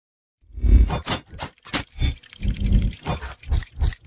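Logo-intro sound effects for animated gears assembling: a run of about nine heavy mechanical hits and whooshes, each with a deep thud, coming irregularly over the four seconds.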